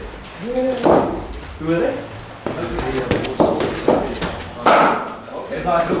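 Indistinct voices with several sharp knocks of cricket balls in indoor practice nets, the loudest about three-quarters of the way through.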